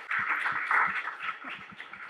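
Small audience applauding, the clapping strongest in the first second and thinning out after.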